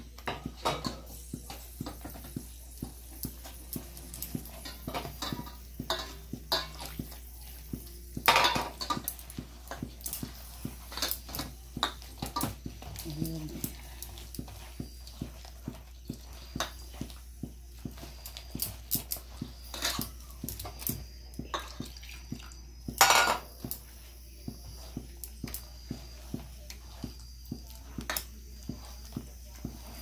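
A hand mixing a thick batter of rice flour and gram flour with water in a stainless steel bowl. Fingers and bangles keep clicking and scraping against the steel, with louder knocks about eight seconds in and again near the 23-second mark.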